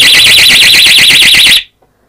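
Pyronix wireless external bell's siren sounding, set off as its cover is opened (tamper alarm): a very loud, fast, high-pitched electronic warble that cuts off suddenly about one and a half seconds in.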